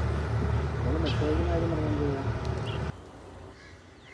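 Steady low rumble of a boat engine out on open water, with a voice over it; it cuts off abruptly about three seconds in, leaving only quiet background.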